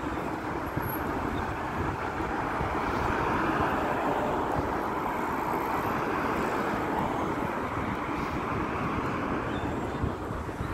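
Steady city street traffic noise, swelling a little toward the middle.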